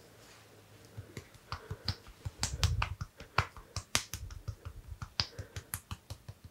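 Sharp finger snaps and clicks of an ASMR head-and-ear massage, coming in a quick, irregular run from about a second in. Deep muffled thumps from the hands against the head come in among them around the middle.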